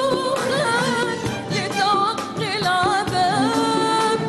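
A woman singing a Tunisian song with an orchestra accompanying, her voice holding long notes and bending them in wavering ornamented turns.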